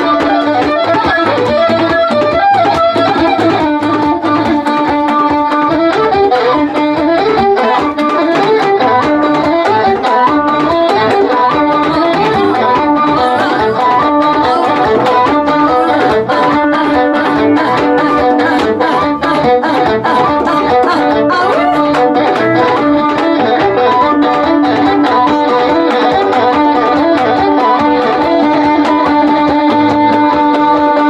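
Live Ethiopian traditional band music: a washint flute and a stringed instrument carry the melody over hand drums, with a held note coming back again and again underneath.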